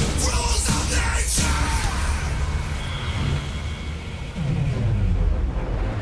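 Dramatic intro music with a heavy, steady low end and a few sharp hits in the first second and a half.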